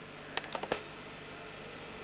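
A cue striking the ball and billiard balls knocking into each other: four quick, sharp clicks within about half a second, a little way in.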